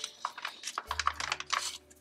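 Foil sauce pouch crinkling in the hands as it is squeezed to push thick mapo tofu sauce into a pan: an irregular run of small clicks and crackles.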